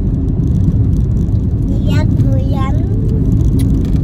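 Steady low rumble of a car's road and engine noise heard from inside the cabin. A high voice calls out briefly twice, about halfway through.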